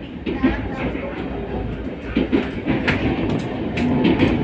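Train running on the rails, heard from inside the carriage: a steady low rumble with irregular clicks as the wheels cross rail joints.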